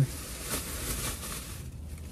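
Rustling of a cotton T-shirt being wrapped by hand around a drinking glass, a soft scratchy rustle that dies away near the end.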